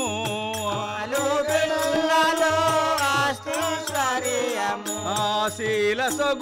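Telugu devotional folk singing, a Pandarinath tattvam bhajan, sung by a village troupe. The lead voice holds long wavering notes over harmonium, a drum beat and small hand cymbals.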